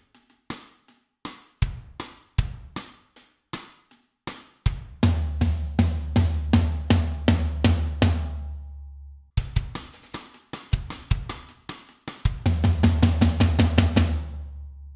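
Roland electronic drum kit playing a pop-punk pre-chorus twice. First comes a sparse groove of rim clicks and hi-hat over kick drum, then a build of steady, even snare and bass drum hits that breaks off with a stop. The second build starts a couple of seconds before the end.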